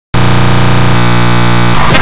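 Loud, harsh, distorted electronic sound: a buzzing synthesizer-like drone starts after a brief cut-out and shifts to a different tone about a second in. It breaks into noisy clatter near the end.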